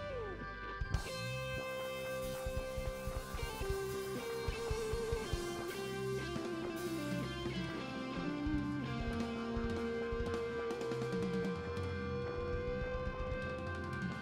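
Rock band playing live: electric guitar playing a slow stepping melody over sustained organ chords, with bass and drums, a cymbal or drum crash about a second in.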